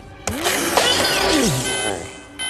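A loud soundtrack sound effect with sweeping pitches over music, then near the end an electronic alarm starts, a steady multi-tone blare that repeats in short blasts.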